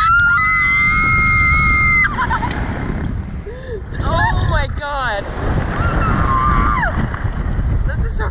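Two riders screaming as a Slingshot reverse-bungee ride launches them skyward, over loud wind rushing across the microphone. A long held scream fills the first two seconds, short whooping yells follow at about four to five seconds, and another held scream comes around seven seconds.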